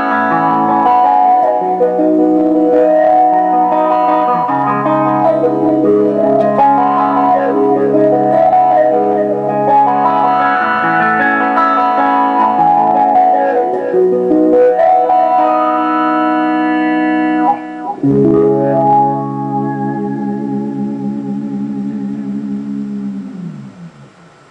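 Clean-toned electric guitar played through a GLAB Wowee Wah pedal set to bass low, deep high and Q high: chords and melodic lines with the wah sweep moving the tone's brightness up and down. Near the end a last chord rings out, then dips in pitch and fades away.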